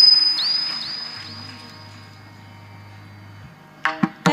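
A held musical note fading away over about two seconds, with a faint high whistling tone above it. Then a quiet stretch with a low hum, until a voice comes back in near the end.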